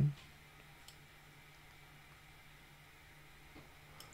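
Near silence: room tone with a faint steady low hum and two faint short clicks, about a second in and near the end.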